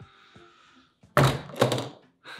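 Two heavy thunks about half a second apart, a little past the middle: an old suitcase being dropped or set down on the floor.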